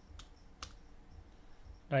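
Two faint clicks of computer keyboard keys, about half a second apart.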